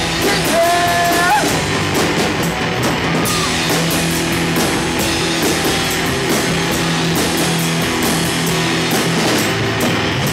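Live rock band playing: electric guitars and a drum kit, loud and continuous.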